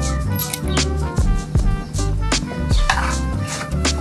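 Lo-fi chill-out background music with a steady beat: a repeating bass line and regular drum hits under a soft melody.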